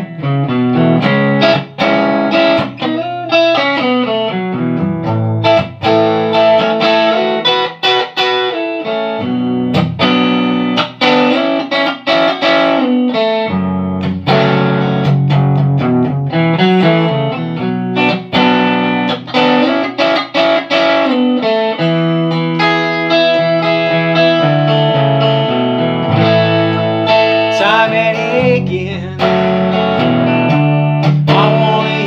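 Hollow-body electric guitar played through an amplifier, strummed chords moving through a song's chord progression, changing about every second.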